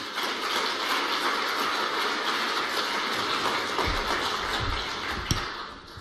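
Audience applauding steadily, fading out near the end.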